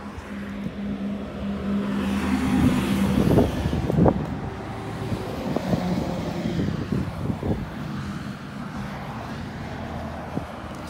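A motor vehicle nearby: a steady low engine hum, then a rush of sound that swells about two to four seconds in and fades. A few knocks of the phone being handled come around the loudest point.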